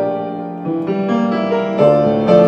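Grand piano played in a slow, quiet improvisation: held chords with new notes entering about every half second.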